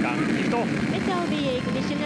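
H-IIA rocket lifting off, its main engine and solid rocket boosters making a steady rushing noise, with voices over it.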